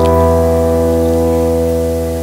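Soft keyboard music: a single sustained chord held and slowly fading.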